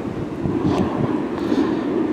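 Wind buffeting a phone's microphone, a steady low rumble.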